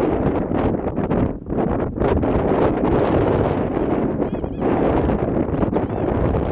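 Wind buffeting the camera microphone: a gusting rumble that rises and dips.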